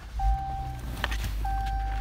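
A 2015 Jeep Cherokee Trailhawk's engine started by its push button: a short burst of starting as it catches, then a steady low idle. A steady electronic chime tone from the dash sounds twice over the idle.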